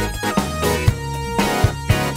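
A live band playing: drum kit, electric bass, keyboards and electric guitar, with held chords over drum hits.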